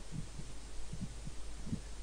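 Low steady background hum with a few faint, soft low thumps scattered through it; no speech.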